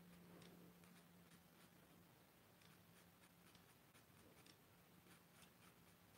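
Near silence, with faint repeated scratches of an oil-paint brush on canvas and a faint low hum.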